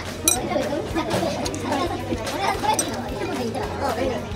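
Indistinct talking voices with a sharp clink about a third of a second in, with utensils being used on a ramen bowl.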